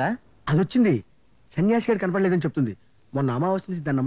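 Crickets chirping in a steady, high, pulsing trill throughout, with a man's dialogue in several short bursts laid over it.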